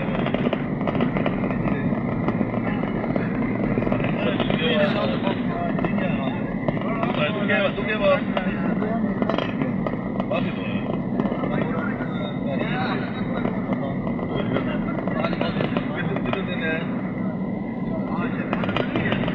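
Steady road and engine noise of a car driving at motorway speed, heard from inside the cabin, with indistinct voices mixed in.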